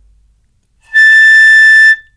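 Piccolo playing a single steady A, loud and held for about a second, starting about a second in.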